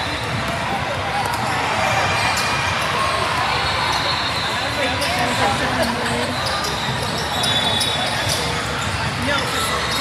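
Basketballs bouncing on a hardwood court with short, high sneaker squeaks, over a steady babble of many voices in a large, echoing hall.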